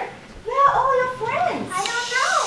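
High-pitched voices of young children talking in short rising and falling phrases, after a brief pause near the start.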